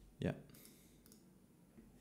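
Faint computer mouse clicks in a quiet room, after a brief spoken "yeah" near the start.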